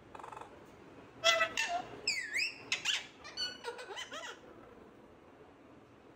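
Pet parakeet calling: a run of shrill squawks and chattering chirps, with a whistle that dips and rises in the middle, lasting about three seconds from about a second in.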